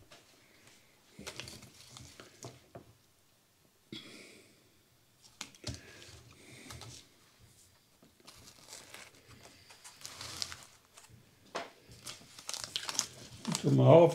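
Intermittent crinkling and rustling of a small paper seed packet being handled, with light handling noises from the plant tubs, in short scattered bursts. A voice begins near the end.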